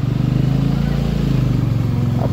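Motorcycle engine running at a steady low note as the bike is ridden along, with a light hiss of road and wind noise over it.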